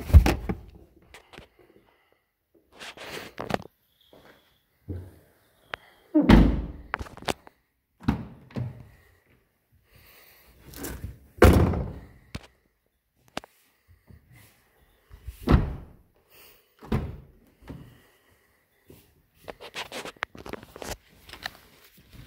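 Rear seatbacks and doors of a 2012 Kia Soul being folded, latched and shut: a series of separate heavy thunks and slams a few seconds apart, with softer clicks and rattles of handling between them.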